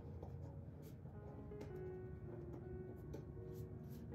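Soft background music of gently held keyboard notes, with a few faint light clicks and scratches of paint tools being handled under it.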